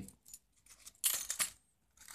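Small brass hinge track links with screws in them clinking and jingling as they are handled, with a quick cluster of sharp metallic clicks about a second in.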